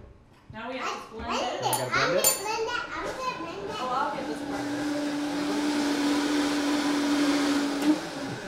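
Countertop blender blending coffee with butter and coconut oil. The motor comes up about three seconds in and settles into a steady whirring hum, which cuts off near the end.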